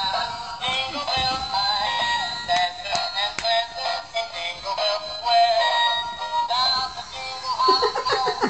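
Animated plush reindeer toy playing a Christmas song with a sung vocal through its small built-in speaker, thin and tinny with almost no bass.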